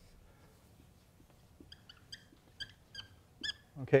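Dry-erase marker squeaking on a whiteboard while writing: a run of short, high squeaks, about eight of them, beginning about one and a half seconds in and ending just before speech resumes.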